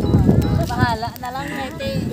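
Several people talking close by, with a high voice rising and falling about a second in, over low knocking and handling noise.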